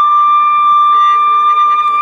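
Background music opening on one high note held steadily, a flute-like instrument sustaining a single pitch.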